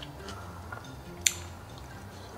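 Faint, wet chewing of jello-powder-coated grapes, with one sharp click just past a second in.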